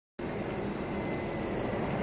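A burning car's fire making a steady rushing roar with a low rumble underneath.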